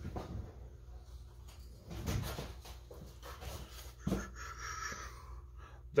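A few faint knocks and rustles of someone moving about and picking up a small wooden piece, with a short, faint higher-pitched sound near the end.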